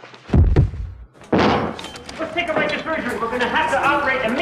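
A heavy door slam, a deep thud in the first second, followed by a busy jumble of overlapping voices.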